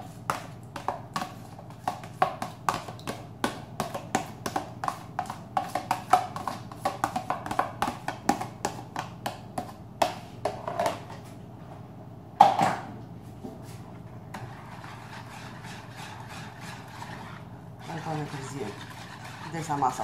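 Rapid clicking and tapping, three or four a second, as thick yogurt is scraped and knocked out of a plastic tub into a plastic bowl of beaten eggs, with one louder knock about twelve seconds in. A voice begins near the end.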